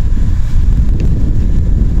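Loud, uneven low rumble of wind buffeting an outdoor microphone, with a single faint click about a second in.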